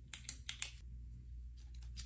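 Sharp light clicks and crackles of a shiny plastic sheet being laid and pressed by hand, with long fingernails, onto a sticky Cricut cutting mat: several quick ones in the first second, then a quieter stretch over a steady low hum.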